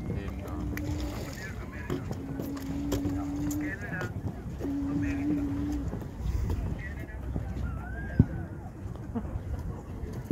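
Outdoor voices with no clear words: three long held vocal tones in the first six seconds and a few wavering higher calls, over low wind rumble on the microphone. A single sharp knock comes about eight seconds in.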